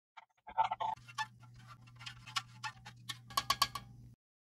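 Plastic spoon stirring coffee in a stainless steel canteen cup, faintly clicking and scraping against the metal sides, with a quicker run of clicks near the end.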